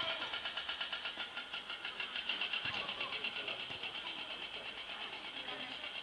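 Faint shouts of footballers on the pitch, heard over a steady, rapidly pulsing buzz.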